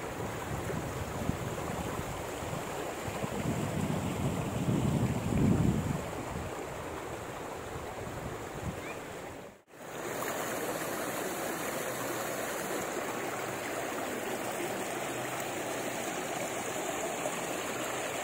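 Steady rushing outdoor noise on a phone microphone, with heavier low buffeting about three to six seconds in. It cuts out briefly about halfway through, then a steadier hiss resumes.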